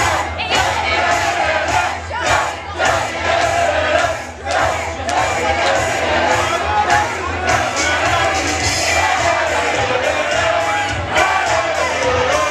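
Live indie band playing loud in a packed venue, with a steady drum beat, and the crowd close around singing and shouting along.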